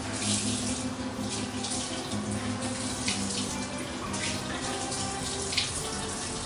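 Steady rushing, hissing noise, like running water, with a low droning hum underneath that breaks on and off.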